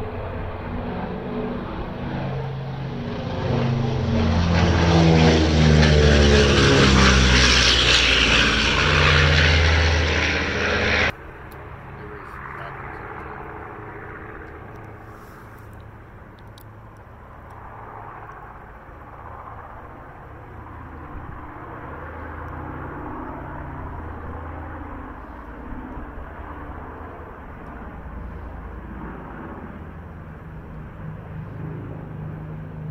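Piston-engine propeller warbird making a low pass: the engine drone swells to a loud peak and drops in pitch as it goes by, then cuts off suddenly about eleven seconds in. A quieter drone of several propeller aircraft follows.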